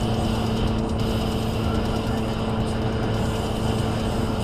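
Steady road and engine noise inside a car cruising at about 77 mph on the highway, with a constant low hum under the tyre and wind rush.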